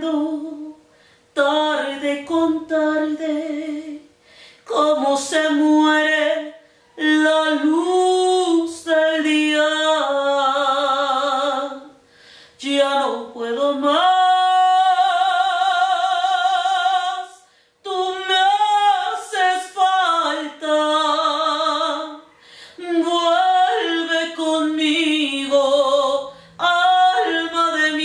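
A woman singing solo and unaccompanied, a slow song in Spanish, with vibrato on the held notes. The phrases are broken by short breaths, and one long note is held for about three seconds near the middle.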